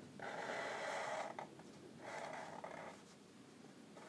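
Felt-tip permanent marker drawing on paper: a stroke of about a second, then a shorter one about two seconds in.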